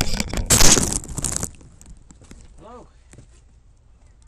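Loud rustling and knocking, like a microphone or recording device being handled, lasting about a second and a half, then cutting off. A faint voice follows in the background.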